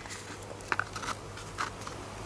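A few small clicks and light scrapes of plastic on plastic as a 3D-printed battery adapter base is handled against a Hilti 14.4V drill's battery housing, over a steady low hum.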